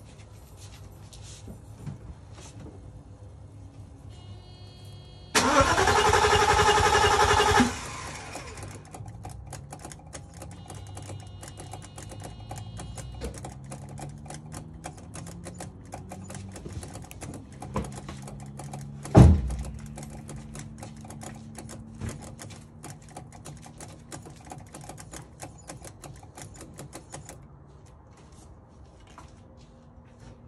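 A 1989 Mercedes 560SEC's V8 cranked by the starter for about two seconds. It is followed by a low hum that rises in pitch and then holds steady, over rapid clicking, with one sharp loud click near the twenty-second mark. The owner calls it crazy and cannot explain it while chasing a no-fuel, no-start fault.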